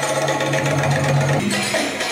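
Darbuka (derbake) drum solo, with the drum played in a fast, unbroken roll that changes pattern about a second and a half in.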